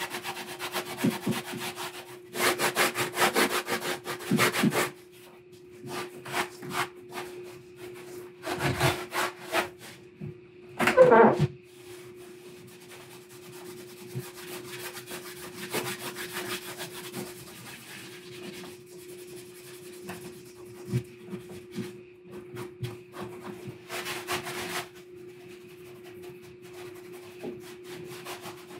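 A cloth rag rubbing over the painted surface of a foam prop safe, working on a Rub 'n Buff wax finish. The rubbing comes in irregular bursts of strokes, heaviest a couple of seconds in and briefly near the middle, over a faint steady hum.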